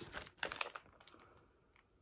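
Plastic bag around a bar of wax melts crinkling as it is handled, a few quick crackles in the first second.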